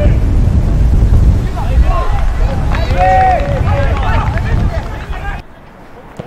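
Wind buffeting the microphone as a loud low rumble, with distant players and spectators shouting across a soccer pitch in the middle. The rumble cuts off suddenly near the end.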